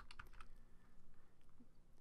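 A few faint computer keyboard keystrokes, clustered in the first half second, as a letter is typed to correct a word.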